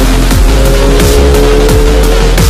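Electronic background music with a fast steady beat, about three drum hits a second over deep bass.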